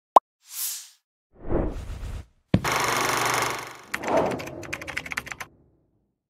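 Logo-reveal sound effects: a sharp pop, a short high whoosh, then a lower whoosh. About two and a half seconds in comes a hit followed by about a second of hissing swell, then a rapid run of clicks that stops about half a second before the end.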